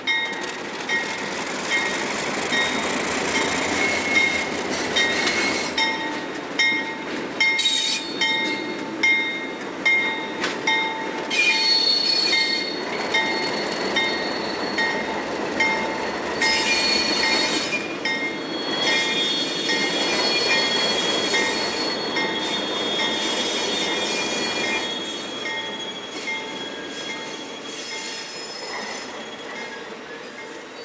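Passenger coaches rolling slowly past, their wheels squealing in high, shifting tones and clicking over rail joints about once a second. The sound fades near the end as the train moves away.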